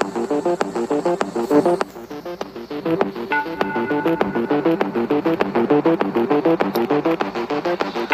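Electronic background music: a fast, evenly repeating synthesizer note pattern over a steady pulse, which thins out briefly about two seconds in before picking up again.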